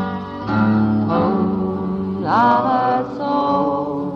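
Instrumental passage of an English folk song: acoustic guitar with fiddle, one instrument sliding up into a long held note a little over two seconds in.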